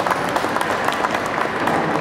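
Audience applauding: a spread of many hand claps.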